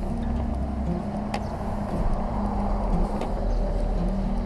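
Street traffic beside the pavement: a steady low rumble, with a passing vehicle swelling and fading in the middle.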